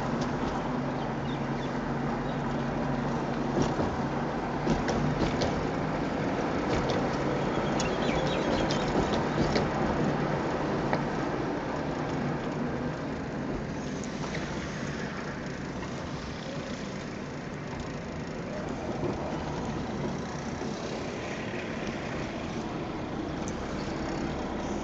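Steady engine and road noise of a car driving, heard from inside the cabin, with a few light clicks in the first half.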